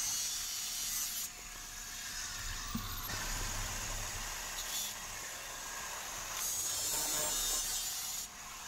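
Angle grinder cutting through square steel tubing with a cut-off wheel: a hissing cut that breaks off about a second in, the motor running on alone for a couple of seconds, and the cut resuming near the end.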